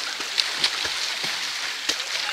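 Water splashing and lapping in a steady hiss of many small irregular drips and slaps, as people move about in shallow water close by, with one sharper splash near the end.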